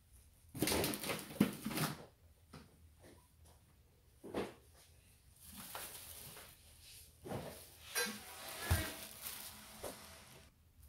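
Thin plastic grocery bags rustling and crinkling as they are handled, in irregular bursts with a few sharp knocks, and a longer stretch of crinkling in the second half.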